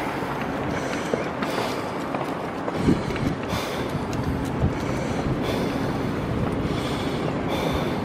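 Strong wind buffeting the microphone as a steady rushing noise, with a few small knocks and rattles of the moving camera.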